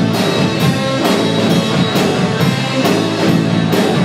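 Live rock band playing an instrumental passage on electric guitars and drum kit, with a steady beat of cymbal and drum hits about twice a second.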